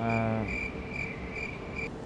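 Cricket chirping sound effect: a high-pitched chirp pulsing about two to three times a second, used to mark an awkward silence. A brief low, steady hum sounds at the start.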